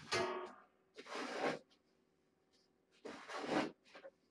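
Cat litter being scooped and poured, three short gritty rushes about one and a half to two seconds apart.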